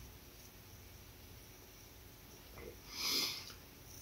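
Quiet room, then one short breath drawn through the nose, a sniff, about three seconds in.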